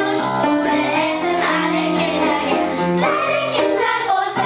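Children's choir singing a pop song in unison, with piano accompaniment underneath.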